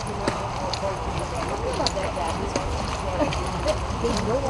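Footsteps of several people walking on a muddy dirt trail, uneven single steps, with the group's conversation murmuring in the background over a steady low rumble.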